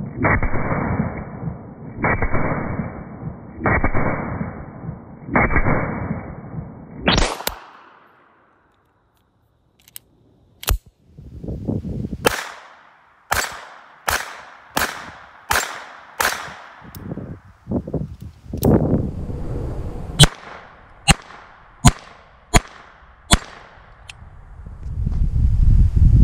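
Colt Model 1908 Vest Pocket pistol firing .25 ACP rounds: a long string of sharp shots, some spaced a second or more apart and others in quick runs. The first few shots sound muffled.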